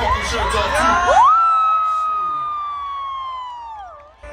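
Festival crowd cheering and whooping over the stage sound system. About a second in, the bass drops out and a single long high-pitched tone glides up, holds while slowly sinking, and falls away near the end.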